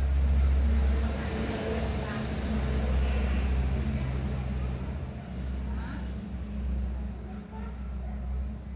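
A steady low motor hum, loudest in the first second and easing slightly after.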